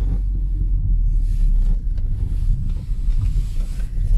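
Car driving slowly over a rutted, slushy snow road, heard from inside the cabin as a steady low rumble of engine and tyres.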